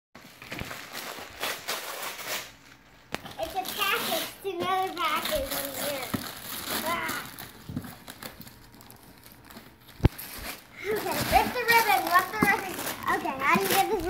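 Gift-wrapping paper being ripped and crumpled off a large cardboard box in several bouts, with young children's high voices and squeals in between.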